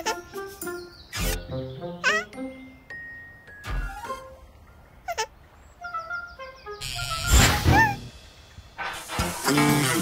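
Cartoon soundtrack: playful children's background music with short sound effects layered over it, including a loud whooshing burst with chirping whistles about seven seconds in.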